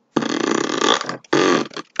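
A person's loud, rough, burp-like vocal noise in two parts: about a second long, a brief break, then about half a second more.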